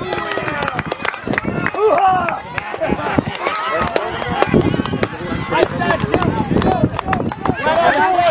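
Voices of sideline spectators and young players shouting and calling out over one another, none of it clear speech, with scattered sharp clicks.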